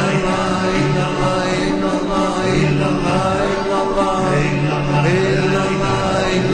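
Devotional chanting with music: voices singing a melody over a low phrase that recurs every couple of seconds.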